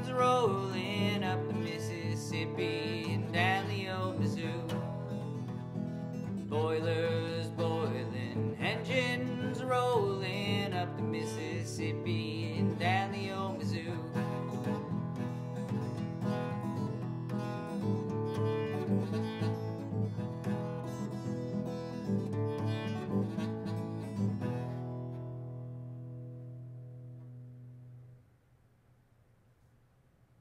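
Acoustic guitar playing the instrumental close of a country ballad, with a bending melody line over the chords for about the first half. About 24 seconds in, a final chord is struck and rings out, fading away.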